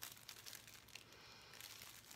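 Faint, irregular crinkling of the clear cellophane wrapper around a bath bomb as it is handled.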